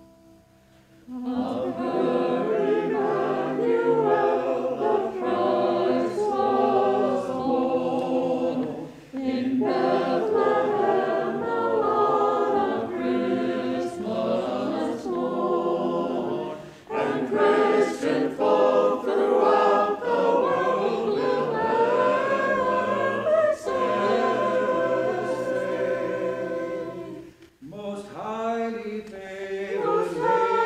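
Mixed choir of men and women singing a hymn or carol in sustained phrases, with brief breaks between phrases.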